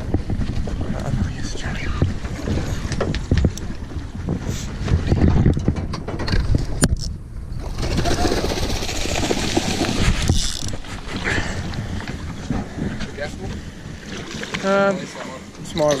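Hooked tuna splashing and thrashing at the surface beside a small boat, with wind noise on the microphone throughout.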